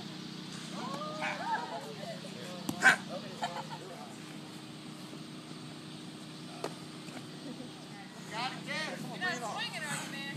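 Voices talking at a distance over a steady low hum, with one sharp crack about three seconds in and a fainter click near seven seconds.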